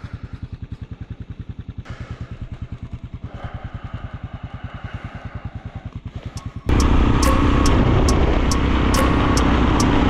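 Yamaha XT660Z Ténéré's single-cylinder four-stroke engine idling with an even, rapid thump. About two-thirds of the way through, a much louder steady sound with a regular ticking beat cuts in suddenly.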